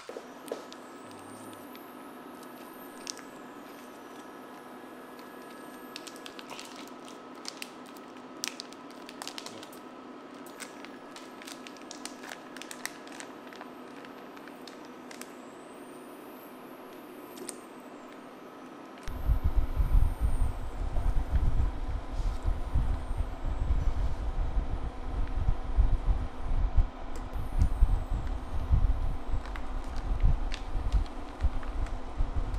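Portable induction cooktop humming steadily with its cooling fan, with a few light clicks and taps. About two-thirds of the way in, a louder, irregular low rumble sets in and continues.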